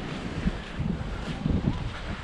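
Wind buffeting the microphone in uneven low rumbles and gusts.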